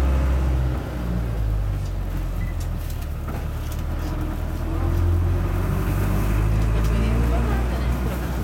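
Engine of a slow-moving tour bus heard from inside the passenger cabin, a steady low rumble whose note shifts about a second in and again around five seconds in.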